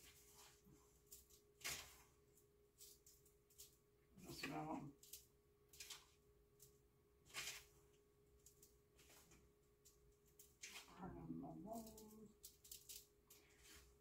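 Near silence broken by faint, scattered short crunching clicks of a hand pepper grinder being twisted to fill a measuring spoon, over a faint steady hum. A soft muttered word comes about four seconds in, and low murmuring follows later.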